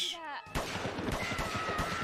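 Anime battle sound effect: a rapid run of sharp, gunfire-like bangs of small explosions, starting about half a second in, with a faint thin tone over them.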